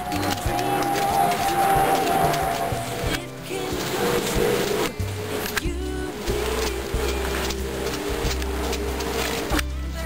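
Background music with held notes over a bass line that changes every second or two.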